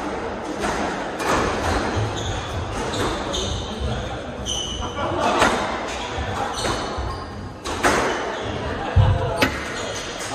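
Squash ball rally in an echoing court: sharp hits of racket on ball and ball on wall, roughly once a second and irregular, with short high squeaks of shoes on the wooden floor.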